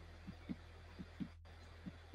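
Faint, muffled computer keyboard typing: about five soft, irregular taps over a low steady hum.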